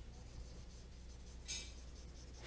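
Quiet room hum with a brief, faint scratch of writing on a board about one and a half seconds in.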